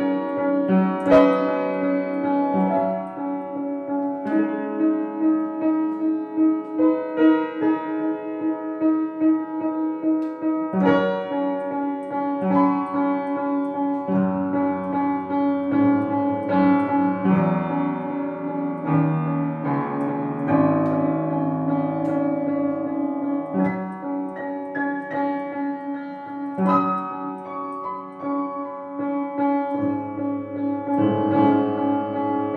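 Solo piano playing a classical piece: a quickly repeated note in the middle register pulses under shifting chords and higher melody notes.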